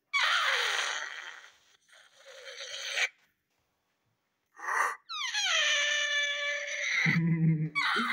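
Cartoon sound effects from a TV soundtrack: two hissing noise bursts, the first falling and the second rising, then a short burst and a long falling glide of several tones that ends in a low buzz near the end.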